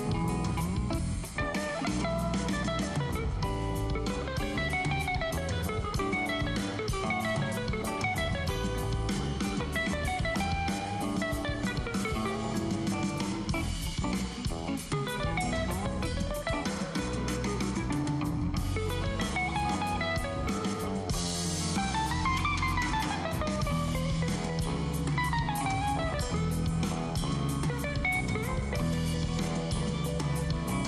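Semi-hollow electric guitar playing quick single-note runs that climb and fall, over a band with bass and drum kit in a maracatu groove.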